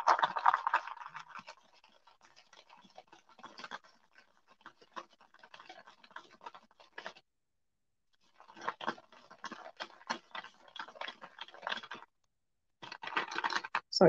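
Wooden beads rolling and clicking against each other and the paper bowl as it is swirled to coat them in gold paint: a faint, irregular patter of small clicks and scrapes that stops twice for about a second.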